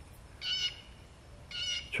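Two short, high-pitched animal calls, each about a third of a second long: one about half a second in and a second near the end.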